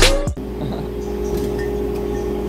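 Backing music cuts off abruptly about a third of a second in, leaving a steady machine hum with a faint held tone, the hum of a shop interior with refrigerated drinks coolers.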